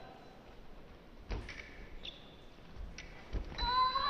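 Fencers' feet thudding twice on the piste as the foil bout opens, then about three and a half seconds in a steady high electronic tone starts, the scoring machine registering the first touch, and the crowd begins to cheer.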